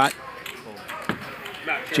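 A few short clicks of poker chips being handled and put out as a bet, over low room noise.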